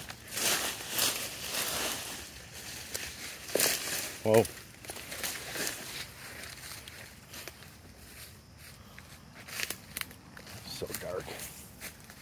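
Footsteps crunching through dry leaf litter and brush, with irregular rustling and crackling of leaves and twigs, heaviest in the first couple of seconds.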